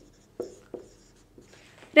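Marker pen writing on a whiteboard: a few short, quiet strokes and taps as a word is written.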